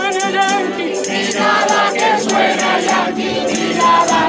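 A group of voices singing together, accompanied by strummed acoustic guitars: a classical guitar and a smaller guitar, with a steady strummed rhythm.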